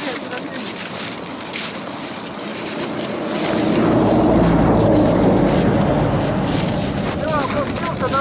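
Skis and poles scraping and crunching on snow as a skier slides down a snowy bank, with a low rumble swelling about four seconds in and easing near the end.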